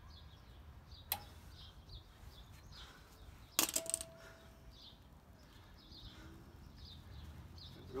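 Metal clinks of hand tools fitting a cotter pin through a castle nut on a wheel spindle: a light click about a second in, then a louder metallic clatter about three and a half seconds in, followed by a short ringing tone. Small birds chirp faintly throughout.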